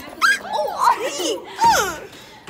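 A girl's high-pitched exclamations: several short drawn-out cries that swoop up and down in pitch, the loudest near the end.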